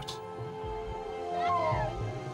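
Background music of steady held notes, with a voice-like melody note in the second half that wavers and then slides down.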